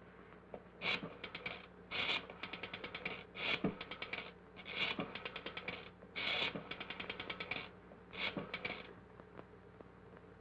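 Rotary telephone dial being dialed: six digits in turn, each a wind-up of the finger wheel followed by a rapid run of clicks as it spins back. Some digits give short runs and others long ones.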